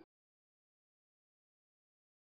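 Silence: the sound track is blank, with not even room tone.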